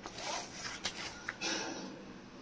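A paper school notebook being flipped open: rustling, scraping paper with a couple of sharp page-flick ticks about a second in.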